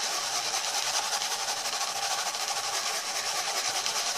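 Water and coarse gravel being swirled round a plastic gold pan: a steady, gritty swishing hiss of stones rolling and scraping over the plastic.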